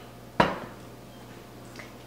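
A single sharp clink of a metal spoon against a stainless steel mixing bowl less than half a second in, with a brief ring, then quiet room tone.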